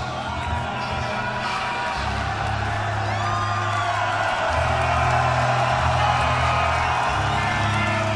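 A nu-metal band's closing chords ring out, held low notes shifting a couple of times. A large festival crowd cheers, whoops and whistles over them, and the cheering swells.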